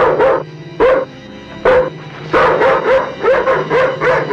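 A dog barking repeatedly: a few spaced barks, then quicker ones from about two and a half seconds in. A low, steady musical drone runs underneath.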